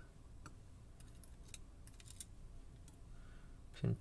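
A few faint, sharp, scattered metallic clicks of steel tweezers handling small lock pins: setting a pin down in a metal pin tray and reaching into the euro cylinder's plug.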